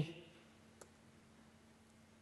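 A single faint click from the laptop keyboard about a second in, over quiet room tone with a faint steady hum.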